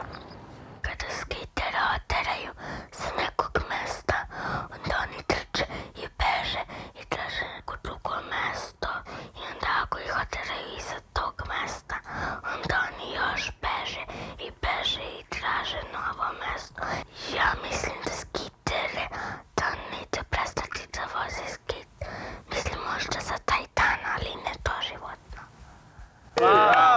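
A woman's quiet voice-over narration, spoken near a whisper.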